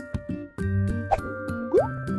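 Light children's background music with steady held notes and soft percussion, broken near the end by a short rising cartoon 'bloop' sound effect.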